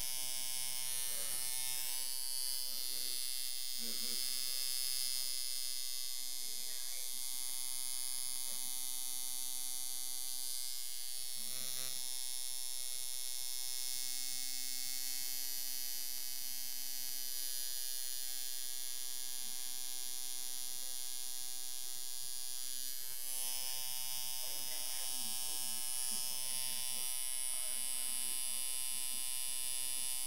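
Custom Eikon two-coil tattoo machine set up as a liner, running with a steady electric buzz as its electromagnets snap the armature bar against the contact screw.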